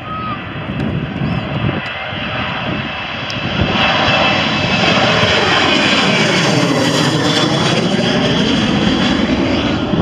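Boeing 737 twin jet engines at takeoff power as the airliner lifts off and climbs straight overhead. The sound builds and becomes loudest from about four seconds in as it passes over, with a sweeping, phasing quality, and stays loud as it climbs away.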